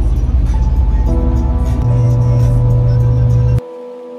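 Low road and engine rumble inside a moving car on a freeway, with background music of sustained notes over it. The rumble cuts off suddenly near the end, leaving only the music.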